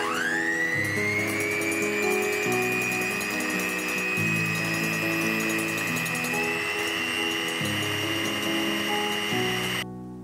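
Electric hand mixer whipping egg whites in a glass bowl: the motor whines up to speed at the start and runs steadily, its pitch stepping up slightly about six seconds in, then cuts off suddenly near the end.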